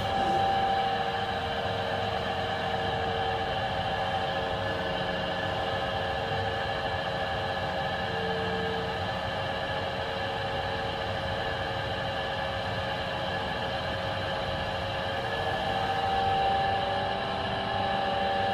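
Ride noise from a KONE MonoSpace passenger lift car travelling upward: a steady hum and rush with faint, steady whining tones, swelling slightly near the end.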